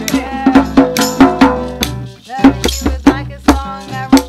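Acoustic jam: a hand drum keeps a steady beat, about three strokes a second, with a maraca shaking and a nylon-string guitar playing along. A voice sings "down" and laughs at the start. The playing drops off briefly just past the middle, then comes back in full.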